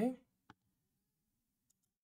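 A single sharp computer mouse click about half a second in, with a much fainter tick near the end.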